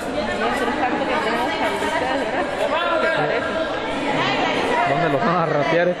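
Indistinct chatter: several voices talking over one another at a steady level, with no single voice standing out.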